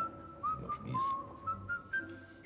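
Background music: a thin, high whistle-like melody holding mostly steady notes with small upward slides between them.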